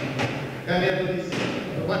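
Indistinct voices talking in a classroom. Two short knocks come right at the start, then speech resumes from under a second in.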